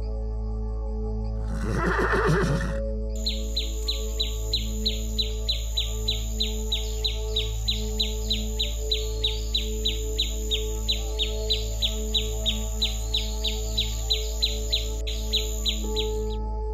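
A horse whinnies once, about two seconds in, over steady soft background music. From about three seconds in, a violetear hummingbird repeats a short, falling chirp about three times a second, on and on in an even rhythm.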